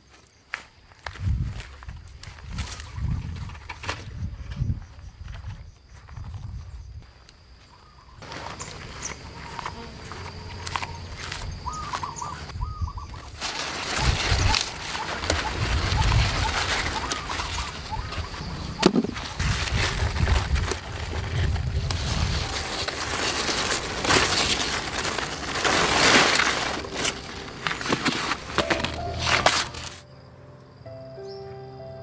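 Wind buffeting the microphone in low rumbling gusts, with a few short bird chirps and a faint steady high tone in the first half. From about halfway, louder rustling and handling noise with occasional knocks as cucumber vines are parted and cucumbers are picked by hand.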